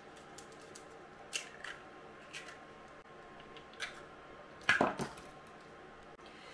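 Eggs being cracked with a knife blade over a plastic bowl: a few light cracks and clicks of shell, then a louder clatter of knocks a little before the end.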